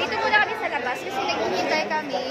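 Several women talking over each other in lively group chatter.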